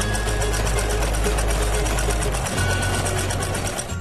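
Electric household sewing machine running a seam through soft fabric, its needle stitching at a fast, even rate of rapid ticks over a low motor hum.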